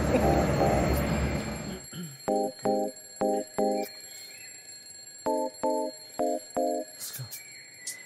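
Steady bus cabin rumble with a spoken word, cut off abruptly about two seconds in. Then a digital alarm-clock beeping follows: two pairs of short beeps, a pause, then two more pairs.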